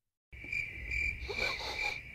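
Crickets chirping: a steady high trill pulsing two or three times a second, starting suddenly out of dead silence about a third of a second in.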